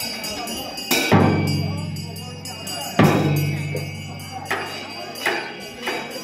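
Two heavy drum beats about two seconds apart, each ringing out low and fading slowly, followed by lighter, quicker strikes near the end.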